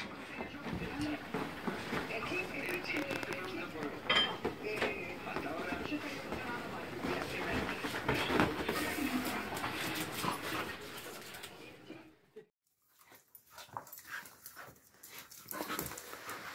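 Two dogs play-fighting, with dog play noises and scuffling. The sound breaks off briefly about twelve seconds in, then resumes in scattered bursts.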